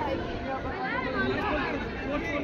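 Background chatter of many people talking at once, no single voice clear, with a couple of short raised calls about a second in.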